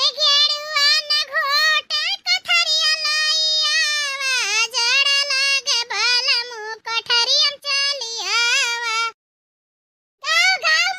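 A very high-pitched cartoon voice in a long, wavering sing-song vocal line, drawn out over several seconds, that stops abruptly about a second before the end.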